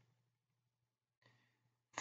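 Near silence: faint room tone, with a soft breath near the end.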